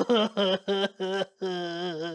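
A man's voice performing a puppet character: a run of short voiced syllables, then one long drawn-out vocal note near the end.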